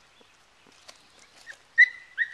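Welsh Terrier puppy giving a short, high-pitched yip near the end, after a few faint crunches of steps on gravel.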